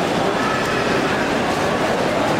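Steady hubbub of a crowded airport terminal: many people moving and talking at once, blended into a continuous noise with no pauses.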